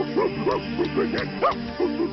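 Cartoon monkey character giving short hoots that rise and fall in pitch, about four a second, over background music, heard through a video call.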